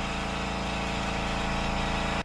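Air compressor for an airbrush running steadily: an even motor hum with a pulsing low end and a hiss of air.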